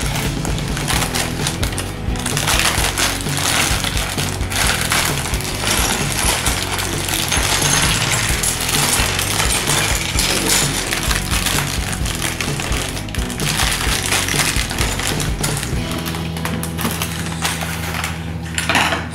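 Small plastic Lego bricks rattling and clattering against each other inside a crinkling plastic bag as it is cut open with scissors and emptied onto a wooden table. Background music plays throughout.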